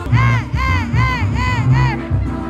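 Loud dance music at a party with a heavy bass line, topped by five quick, high calls that rise and fall in pitch, about two a second.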